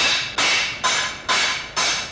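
Hammer striking metal at a forge, five even blows about two a second, each with a brief metallic ring.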